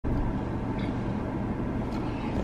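Steady low rumble of a car, heard from inside the cabin, typical of the engine idling.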